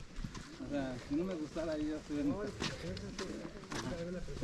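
Faint voices of other people talking in the background, with a few sharp clicks near the end of the stretch.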